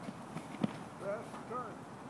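A pole vaulter's running footsteps thud on a rubber track runway, with a sharp louder knock about two-thirds of a second in. This is followed by two short shouted calls, rising and falling in pitch, about one and one and a half seconds in.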